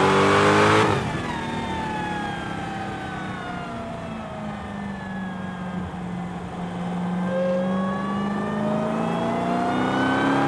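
A car driving hard on a racetrack, heard from on board. It is accelerating at the start, eases off abruptly about a second in and slows gradually, then picks up speed again in the last few seconds.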